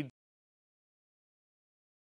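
Digital silence: a man's voice breaks off right at the start and the sound track goes completely dead.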